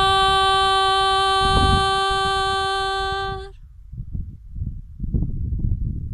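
A woman singing unaccompanied holds one long, steady note for about three and a half seconds, then stops. After that only wind buffets the microphone.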